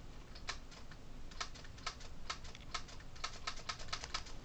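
Plastic keypad buttons of a mobile phone clicking in an irregular run of light presses, a few scattered at first, then several a second from about halfway.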